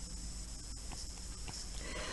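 Quiet room tone with a steady low hum and a few faint ticks, the taps of a stylus writing on a pen tablet.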